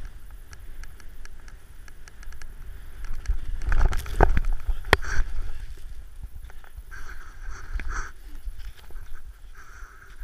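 Snowboard riding through deep powder, with wind buffeting a body-mounted camera's microphone. About four to five seconds in come a few sharp knocks and a louder rush of snow as the rider goes down into the powder. After that, several short bursts of rustling follow.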